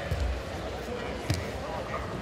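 Two dull thumps of grapplers' bodies and feet on a foam competition mat, one at the start and a sharper one just past a second in, over a steady hubbub of arena crowd voices.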